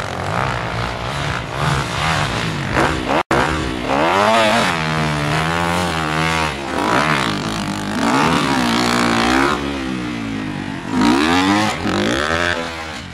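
Motocross dirt bike engines revving up and down on a track, the pitch rising and falling with each throttle change and gear shift. The sound cuts out for an instant about three seconds in.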